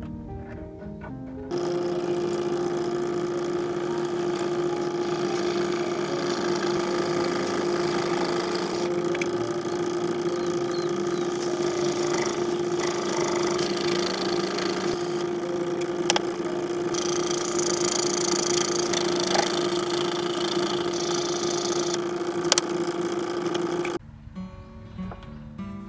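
Small homemade scroll saw running with a steady motor hum, its fine blade cutting a flattened coconut-shell board, the hiss of the cut rising and falling as the board is fed. Two sharp clicks come near the end. Acoustic guitar music plays briefly before the saw starts.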